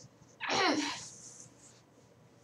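A girl's short, breathy vocal burst about half a second in, falling in pitch as it fades.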